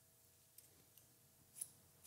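Haircutting scissors snipping through a section of wet hair: a few short, faint snips, the clearest about one and a half seconds in.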